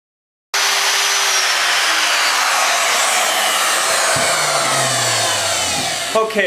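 Electric router with a dovetail bit hogging out wood from the neck mortise of an upright bass. It runs loud and steady while its whine slowly sinks in pitch. The sound starts abruptly about half a second in.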